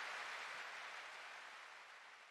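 Faint steady background hiss that slowly fades away, with no distinct clicks or handling sounds.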